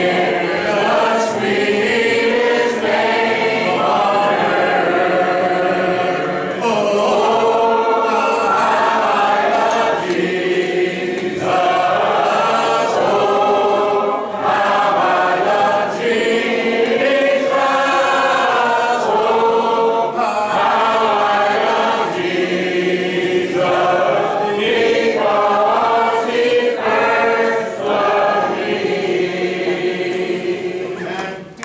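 Congregation singing a hymn in unaccompanied voices, sustained notes held and changing pitch line by line.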